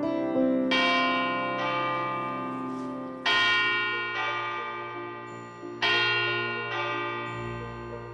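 The last piano notes give way to deep bell chimes in a musical intro, struck three times about two and a half seconds apart. Each strike rings out and fades over a soft, steady low drone.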